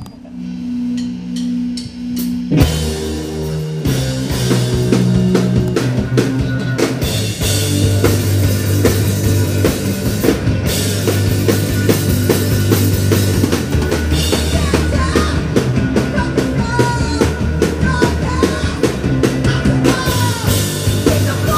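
Live punk rock band starting a song: a low riff plays alone for the first couple of seconds, then the drums and guitars come in about two and a half seconds in and the full band plays loud, with fast, steady drumming.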